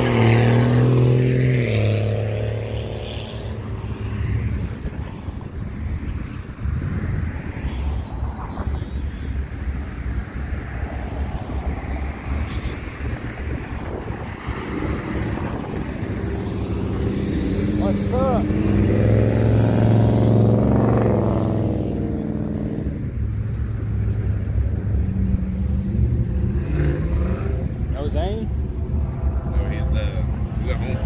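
Vehicle engines driving off a car meet. A pickup truck's engine is loud as it passes at the start. About two-thirds of the way in, a red classic muscle car accelerates away, its engine pitch climbing as it revs, and another engine revs briefly near the end.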